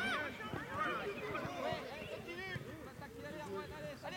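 Children's voices calling and shouting in short, high-pitched bursts across a football pitch, over a low outdoor rumble.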